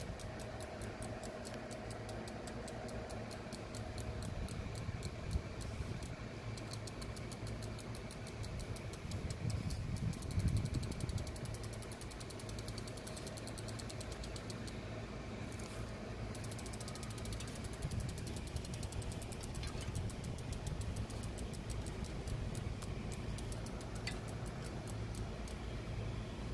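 A steady low mechanical hum with a fast, even ticking over it, like a small machine running.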